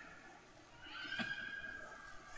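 Altar bells ringing faintly at the elevation of the consecrated host, a ring of several steady tones starting about a second in.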